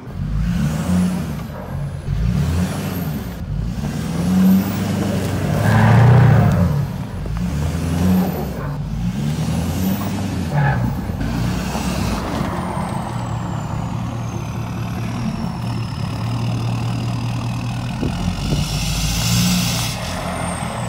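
Diesel engine of a Ford FX4 pickup pulling an old truck on a tow strap, revving in repeated surges for the first dozen seconds, then running steadily under load, with a high whistle that rises and falls with the revs. The towed truck was left in gear, so it drags against the pull.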